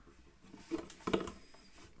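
LEGO plastic pieces clicking and rubbing softly as the built dragon model and its jointed wings are handled, with two small clicks a little under a second in.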